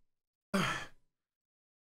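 A man's voice: one short, breathy word, "on", about half a second in, falling in pitch.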